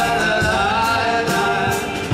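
Live folk-style band music: accordion and acoustic guitars with male singing, and a steady beat of drum and cymbal hits.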